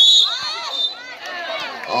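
A referee's whistle blown sharply once at the start, calling an offensive foul, followed by voices shouting with rising and falling pitch.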